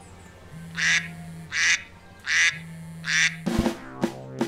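iPhone alarm going off with a quacking duck tone: four quacks about three-quarters of a second apart. Drum-led music starts abruptly just before the end.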